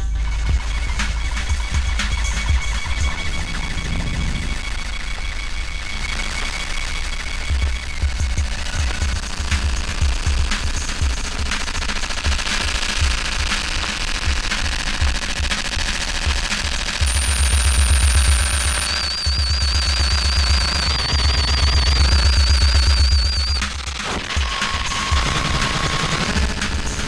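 Live improvised electronic noise music from electronics, turntables and modular synthesizer: dense rapid clicking and crackling over a heavy low bass that swells louder twice in the second half. Thin high tones come and go over it, including a fast-wavering high tone near the loudest stretch.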